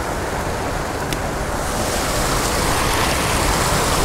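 Creek water pouring over a low concrete weir into the pool below: a steady, even rush of falling water.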